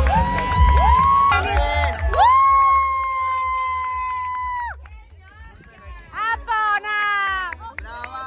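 Two long, high whooping shouts of celebration, the first rising in pitch and the second held steady for about two and a half seconds, as loud dance music fades out at the start. Excited high voices follow near the end.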